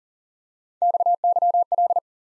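Morse code sent at 40 words per minute as a single steady mid-pitched sidetone, starting a little under a second in. It is keyed in three quick clusters of dits and dahs, the three letters of XYL, the ham abbreviation for 'wife'.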